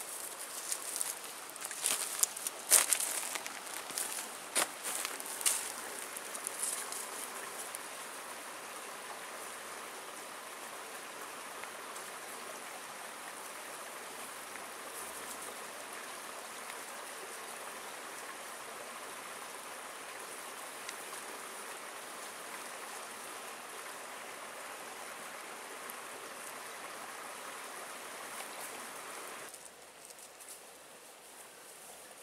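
A small creek running steadily. Over it, a run of sharp crackles and snaps comes in the first several seconds. The water sound cuts off abruptly near the end.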